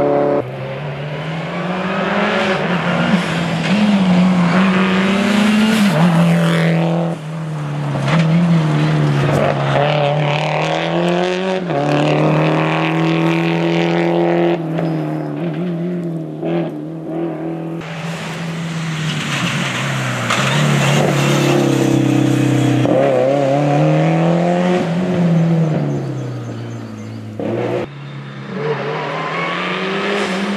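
Subaru Impreza WRX STI rally car's turbocharged flat-four engine driven hard on a stage. Its note climbs and drops again and again as it accelerates, shifts and slows for bends, with a few sudden breaks in the sound.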